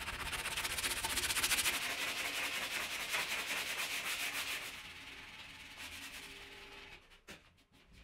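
Sanding the cured epoxy resin surface of a wall panel: a rough, gritty scrubbing, loudest for the first four seconds or so, then fading and stopping near the end, followed by a few light clicks.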